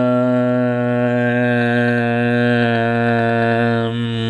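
A man's voice droning one long, steady low note, like a drawn-out 'uhhh', dipping slightly in pitch near the end.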